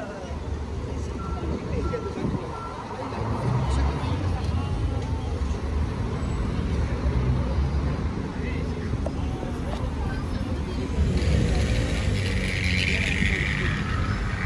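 City street ambience: traffic running along a road, with passers-by talking in the background. A louder hiss-like stretch comes in during the last few seconds.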